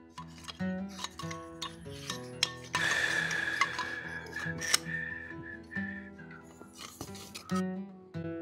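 Acoustic guitar background music, with a hand-held grinder run against the steel steering shaft for about two seconds near the middle. Its whine carries on for about a second after the grinding noise stops.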